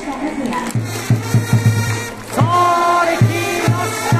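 A Japanese baseball cheering section plays for the starting lineup, with trumpets and a drum and fans chanting along. About a second in, a quick run of drum beats comes; from halfway, long held trumpet notes sound over further drum hits.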